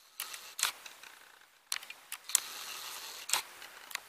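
Handheld camera's lens and body: a few sharp clicks and knocks from handling, with a steady whir for about a second near the middle as the lens zooms out.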